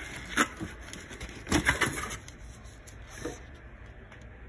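Handling noise from paper-wrapped soap bars and a cardboard box being moved: a few short rustles and knocks, the loudest a cluster about one and a half to two seconds in.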